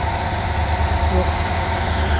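Heavy demolition excavators running steadily: a continuous low diesel-engine rumble with a faint steady hum above it.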